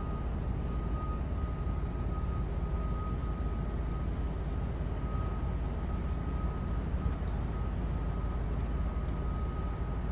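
Steady low rumble inside a parked van's cabin, with a faint steady high-pitched whine running through it.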